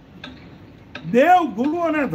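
A man's voice resumes about a second in, in long drawn-out phrases of rising and falling pitch, after a short pause broken by a couple of faint clicks.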